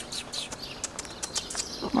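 Small birds chirping outdoors: short, high chirps scattered through the moment, over a light outdoor background. A voice says 'wow' right at the end.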